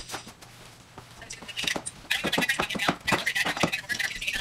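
Spray mop pad scuffing and scraping across a hardwood floor. About halfway in, a person's voice starts up over it.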